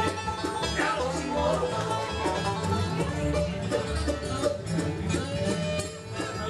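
Live bluegrass band playing an instrumental break: a banjo picks the lead over upright bass and guitar rhythm.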